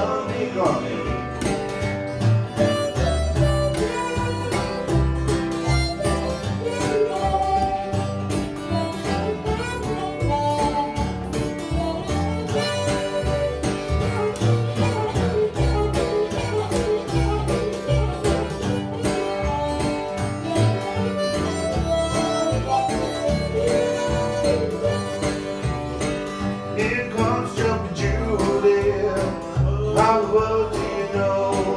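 Acoustic blues instrumental break: harmonica lead over strummed acoustic guitar and plucked double bass, with a steady beat.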